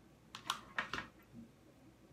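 Hot glue gun being handled and squeezed as a dab of glue goes onto a felt petal: a quick run of about four light clicks in the first second, then quiet.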